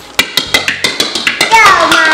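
A light plastic toy bowling ball rolling and bouncing across a tile floor, making a quick run of light hollow knocks. Near the end a voice comes in.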